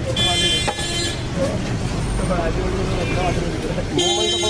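A vehicle horn honks for about a second near the start, over steady street traffic noise and background voices.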